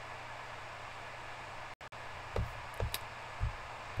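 Steady faint hiss of room tone through the narrator's microphone, with a brief dropout just before two seconds in and a few short, soft low thumps in the second half.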